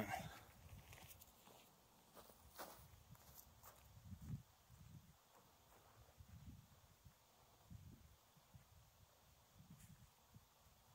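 Near silence, with faint footsteps and shuffling on dry, short grass and soft low thumps now and then, loudest about four seconds in.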